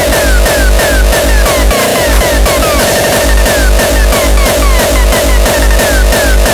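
Hardcore (gabber-style) electronic dance track with a heavy, pounding kick drum and short falling synth notes. The kick drops out briefly about two seconds in, then comes back.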